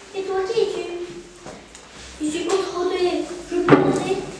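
A child's voice speaking in short phrases, with one sharp knock about three and a half seconds in.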